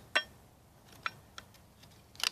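Scrap metal pieces clicking against each other as they are handled: one sharp click just after the start, then two faint ones about a second in.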